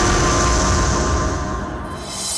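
Loud dramatic background-music sting: a dense sustained swell with a deep low rumble, thinning out and fading near the end.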